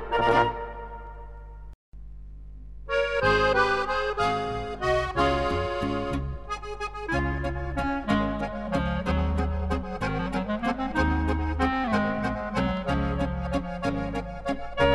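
Oberkrainer polka-band music from a vinyl LP. The last chord of one tune rings out and fades, there is a moment of silence between tracks, and about three seconds in the next tune starts as an instrumental led by accordion over a pulsing bass line.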